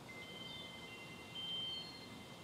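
Faint, high ringing tones: several held notes that overlap and die away, with a slightly louder swell about one and a half seconds in.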